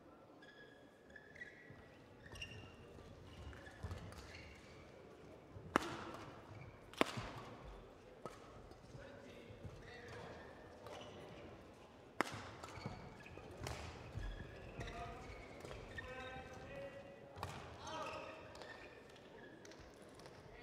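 Badminton rally: rackets striking a shuttlecock with short sharp cracks, about half a dozen hits at irregular intervals, the two loudest about a second apart near the middle.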